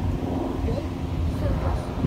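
Faint distant voices over a low, steady rumble.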